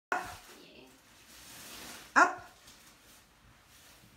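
A dog barks twice, once right at the start and again about two seconds later.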